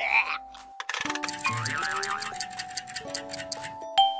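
Cartoon sound effects: a short rising glide at the start, then a rapid, even run of clock-like ticks as the clock's hands are wound forward, over light background music.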